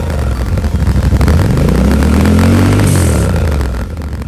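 Yamaha Ténéré 700's parallel-twin engine running through its stock exhaust, revved once: the pitch rises from about a second in, then falls back toward idle near the end.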